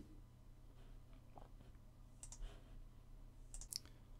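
Near silence, with a few faint soft clicks and rustles about two seconds in and again near the end, from clear transfer tape being slowly peeled off a vinyl decal.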